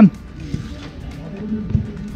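Open-air noise of a futsal game with faint music holding a steady low note that comes in partway through, and a dull thump near the end.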